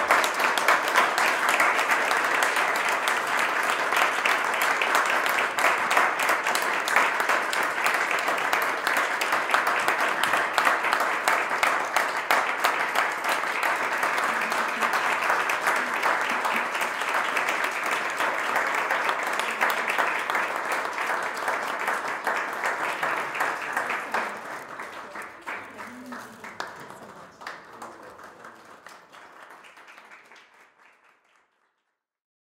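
Audience applauding after the final piece: steady clapping for about twenty-four seconds, then dying away over the last few seconds.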